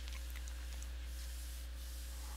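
Low steady electrical hum with a faint hiss and a few very faint ticks: the recording's background noise.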